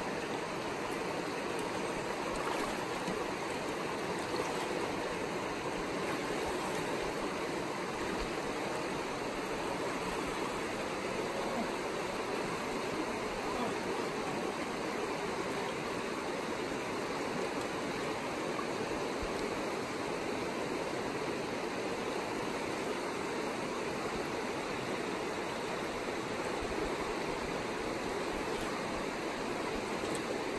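Shallow, rocky mountain creek flowing: a steady rush of water.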